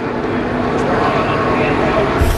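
Trackside sound of NASCAR Cup stock cars' V8 engines running at speed, a steady, dense engine noise.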